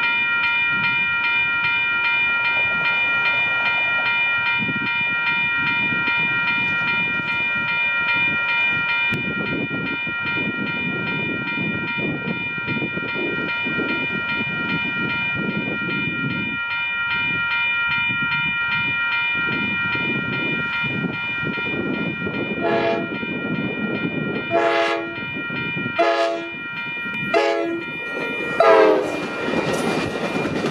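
Railroad crossing bell ringing rapidly and steadily as the approaching Amtrak Pacific Surfliner rumbles closer. In the last eight seconds the train's horn sounds five blasts, the last one sliding down in pitch as the train reaches the crossing.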